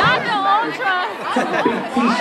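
Several people talking and chattering excitedly close to the microphone in a crowded room.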